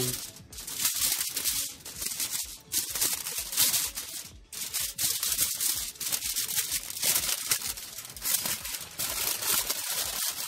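Aluminium foil crinkling and crackling in irregular bursts as it is folded and pressed around a whole fish.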